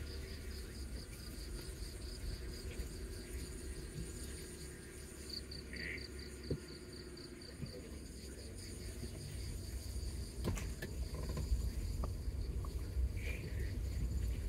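Night insects chirring in a fast, even, high-pitched pulse over the low rumble of a car moving slowly.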